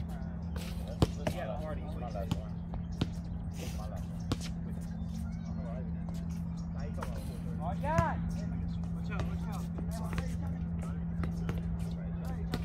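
Basketball bouncing on an outdoor concrete court: a handful of sharp single thuds in the first four seconds, with players' voices around it and one loud shout about eight seconds in. A steady low hum runs underneath.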